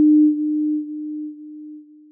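A single low held tone, the last note of a station-ident jingle, fading out in steps.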